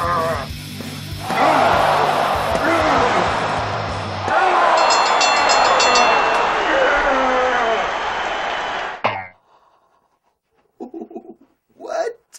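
Soundtrack music with a singing voice, loud and dense, that cuts off suddenly about nine seconds in. After a short near-silence, a man's voice makes two brief sounds near the end.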